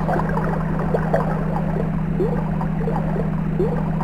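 Water bubbling and gurgling, many small bubble pops rising in pitch, over a steady low hum.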